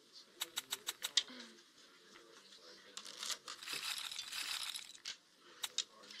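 Casino-chip clicks from an online roulette game as bets are placed: a quick run of about six clicks in the first second and a couple more near the end, with a soft rushing noise in between.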